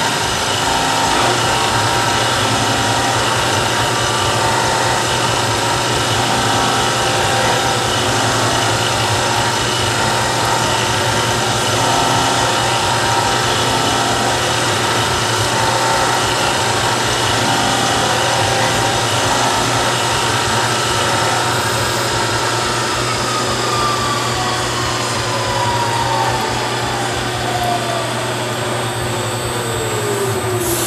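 CNC milling machine cutting a small solid-steel part under flood coolant: a steady machining noise with a whine from the spindle. From about two-thirds of the way in, a tone glides steadily down in pitch to the end, as the spindle winds down.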